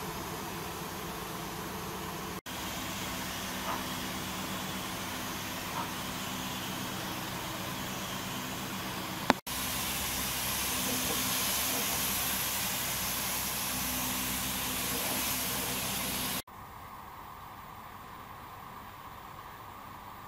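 A steady machine hum with a hiss, interrupted by abrupt cuts and much quieter for the last few seconds.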